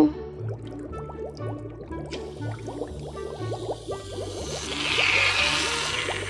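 Aerosol can of pink bath foam hissing as it is sprayed, starting about two seconds in and loudest near the end, over background music with a steady beat.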